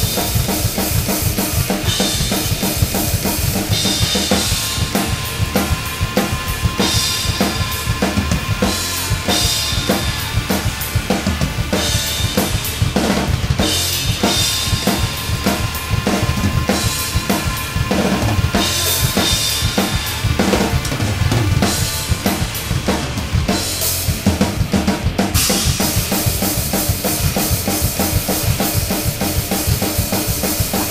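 Pearl Masters MCX drum kit with Soultone cymbals played at a fast, driving metal tempo: rapid kick and snare hits with cymbal crashes surging every few seconds, over the recorded song playing along.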